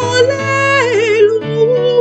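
A solo woman's voice singing long held notes with wide vibrato over sustained accompanying chords: the sung Gospel acclamation of a Mass.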